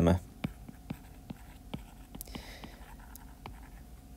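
Stylus writing on a tablet: light ticks and taps from the pen tip, with a brief scratchy stroke about halfway through.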